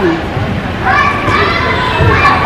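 Public-space background chatter, with a child's high-pitched voice rising over it about a second in.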